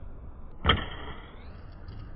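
A thrown dart strikes its target with one sharp hit about two-thirds of a second in. A thin ringing follows and lasts over a second.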